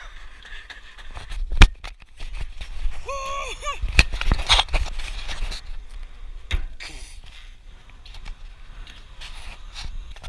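Wind rushing over the microphone of a camera riding on a spinning playground pole ride, broken by three sharp knocks, the loudest about one and a half seconds in, then near four and six and a half seconds. A voice calls out briefly about three seconds in.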